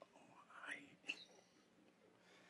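Near silence in a room, with two faint, brief voice sounds, a soft murmur about half a second in and a short one about a second in.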